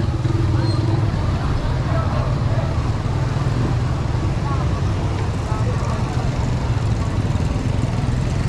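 Busy street ambience: a steady low engine drone of motor traffic, with voices of passers-by in the background.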